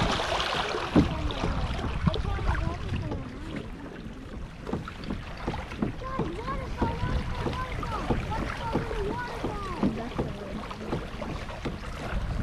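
Water rushing and splashing along the hull of a tandem Hobie kayak under way, with wind on the microphone.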